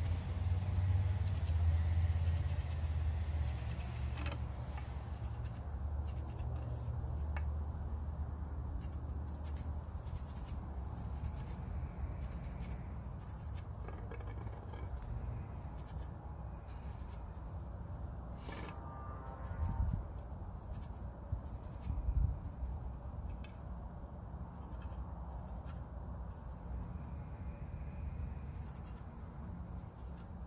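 Pencil scratching in short strokes along a wooden walking stick, tracing the edges of spiral-wound electrical tape, over a steady low rumble. Two dull knocks come about two-thirds of the way through.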